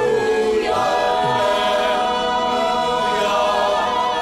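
Choir singing the Alleluia of the Gospel acclamation, in long held notes with vibrato.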